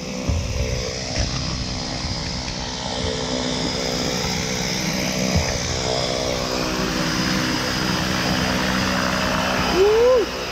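Propeller airplane engine running on the ground, a steady buzzing hum that slowly grows louder. Near the end comes a short rising whoop of a voice.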